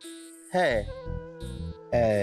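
Television background score of sustained held tones. It opens with a brief high, thin sound in the first half second, and a single spoken word comes about half a second in.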